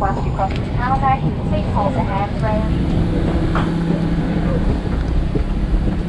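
Low steady rumble inside an airliner cabin, with other passengers' voices in the background during the first half. A steady low hum joins in for about two seconds midway.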